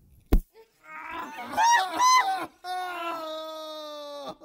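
A single sharp zap about a third of a second in, from an electric flyswatter's charged grid touched to a person's head. A person then cries out, first in a wavering yelp and then in one long wail that slowly falls in pitch.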